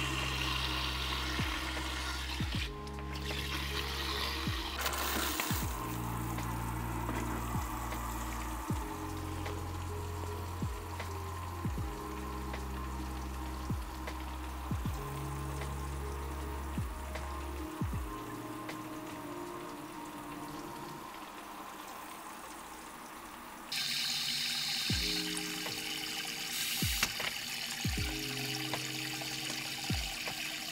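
Water spraying from a hand shower head into a plastic bucket as it fills, fed by the air pressure in a homemade shower tank, with the pressure falling as the bucket fills. Background music with a steady beat plays over it, and the sound gets louder near the end.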